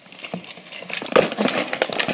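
Rustling and small clicks of a charger cable being handled and packed into a fabric backpack, busiest a little after the middle.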